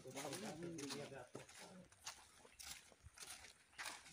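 Men's voices talking for about the first second, then quieter walking sounds: scattered crunches of footsteps on dry fallen leaves along a dirt path.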